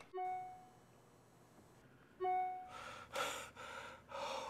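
Sparse musical underscore: a single held keyboard-like note sounds twice at the same pitch, about two seconds apart, with near silence between. A soft breathy swell follows near the end.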